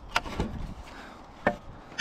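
A few sharp clicks and knocks of hands working at an old tractor work light's housing and wiring connector: two close together near the start and one about a second and a half in.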